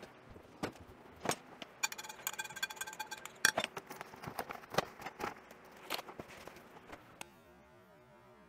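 Handling noise from a cardboard box of couscous being picked up and opened: scattered clicks, taps and rustles, with a quick run of evenly spaced ticks for about a second around two seconds in. The handling dies away about a second before the end.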